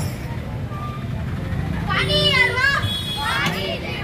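Young voices shout two drawn-out, high-pitched calls, the first about two seconds in and the second just before the end, over a steady low hum of street noise.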